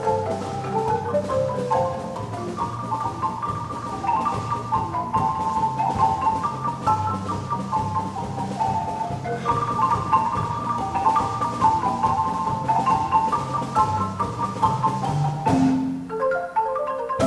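Large wooden concert marimba played by several players with mallets: a quick, many-noted melody in the upper bars over a steady, bouncing bass line in the low bars, in the style of a son jarocho.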